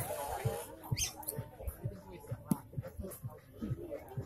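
A Maximilian pionus parrot giving short, wavering calls, loudest in the first second, with soft handling knocks scattered through.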